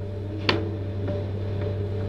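Steady low electrical hum and light hiss in the background of an old speech recording, with one sharp click about half a second in.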